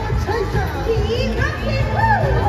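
Children's voices calling out and chattering over music from the stage sound system.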